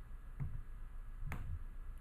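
Quiet room tone with two faint clicks about a second apart, the second one sharper.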